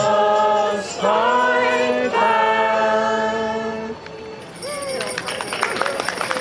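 A group of carol singers singing the long held notes of a carol's final line, which ends about four seconds in. Scattered clapping and a few voices follow.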